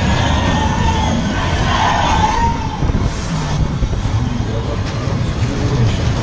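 Ski Jump fairground ride running at speed, with a steady loud rumble of the cars going round the track. Voices and shouts mix in over it, loudest in the first couple of seconds.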